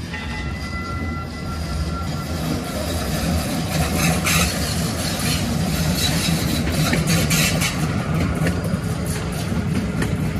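TriMet MAX light rail train approaching and passing close by; its low rumble grows steadily louder as it nears, with sharp clicks around four and seven seconds in.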